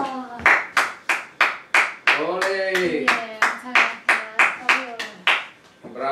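Rhythmic flamenco handclaps (palmas), about three a second, with a voice calling out over them in the middle. The claps stop shortly before the end.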